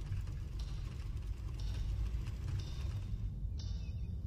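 Reel-to-reel tape recorder running: a steady low hum, with a brighter whirring hiss that swells about once a second.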